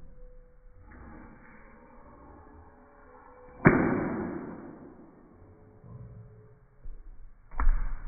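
Two sharp thumps: a loud one a little past the middle that dies away over about a second, and a smaller knock near the end.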